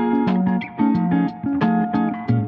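Background music led by plucked guitar, with notes struck in a steady rhythm and a bass line underneath.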